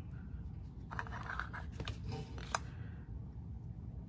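An acrylic stamp block being handled and pressed onto an ink pad to ink a silicone stamp: soft clicks and light rustling, with one sharper click about two and a half seconds in.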